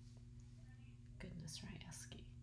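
Faint steady low hum, with a brief soft whisper from a woman a little past halfway.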